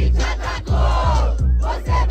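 Hip-hop beat from the DJ's speakers, with deep bass hits a little over two times a second, and a crowd shouting and cheering over it.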